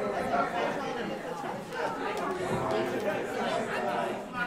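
Indistinct chatter of several people talking at once in a large room, no one voice standing out.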